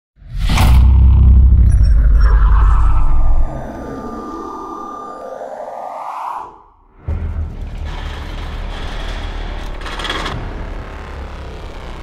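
Cinematic intro sound design: a loud deep boom with a low rumble that stops about three and a half seconds in, then a swelling whoosh that cuts off sharply, a moment of quiet, and a steady low drone from about seven seconds on.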